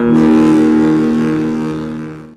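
A single distorted electric guitar chord ends the outro music, ringing out and slowly fading before it stops shortly after.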